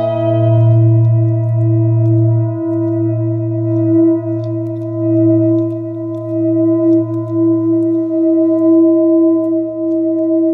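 Metal singing bowl struck once, then ringing on with a deep hum and several steady higher tones. The ring swells and fades in loudness as the bowl is moved about.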